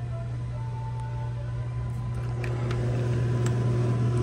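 Steady low hum of refrigerated drink coolers, with a few faint clicks in the second half.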